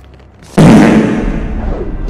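A single loud crashing impact about half a second in, heavy at the bottom and dying away into a low rumble: a dramatic film sound effect.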